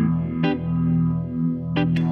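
1978 Gretsch 7680 Atkins Super Axe electric guitar played through a Fender Vibroverb amp: low notes ring on steadily while a few sharp picked notes sound over them, about half a second in and twice close together near the end.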